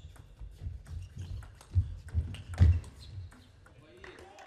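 Table tennis rally: the celluloid-type plastic ball clicking off the rackets and the table at a quick, uneven pace, the loudest strikes about two and two and a half seconds in. Low thuds underneath from the players' feet moving on the court floor.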